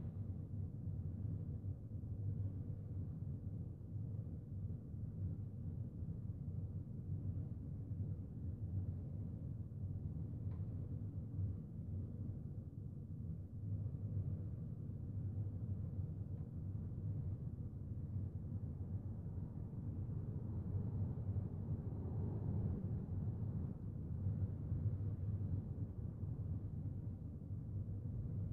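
Steady low background hum of room noise with no other clear sound, apart from a single faint click about ten seconds in.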